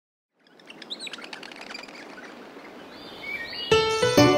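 After about half a second of silence, birds chirp in short, quick calls over a soft outdoor hiss, a nature-ambience bed. Near the end, a bright keyboard music intro comes in loudly.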